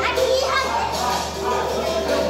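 Many children's and adults' voices chattering and calling out together over background music.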